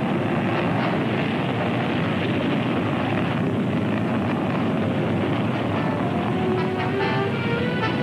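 Rocket blast-off effect: a loud, steady rush of rocket-engine noise, with orchestral string music rising in near the end.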